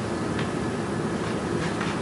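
Steady background hiss of room noise during a pause in speech, even and unchanging.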